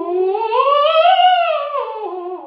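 A woman's singing voice in one unbroken legato glide, rising smoothly to a high note and sliding back down near the end, with a slight vibrato. It is a siren-style vocal exercise that fills the space between the notes.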